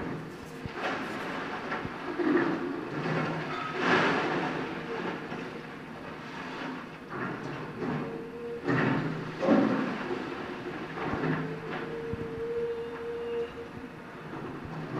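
Caterpillar demolition excavator working with its grapple: clattering crashes and scraping of brick and metal debris over the running engine. The loudest crashes come about four seconds in and again about nine seconds in, and a drawn-out squeal is held for a second or so near the end.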